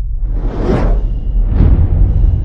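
Two whoosh sound effects of an animated channel ident, each swelling and fading, the second about a second after the first, over a deep, steady bass music bed.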